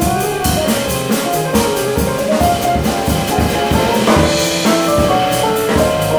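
Jazz trio playing live: a stage keyboard with a piano sound, an electric bass guitar and a drum kit with steady cymbal strokes.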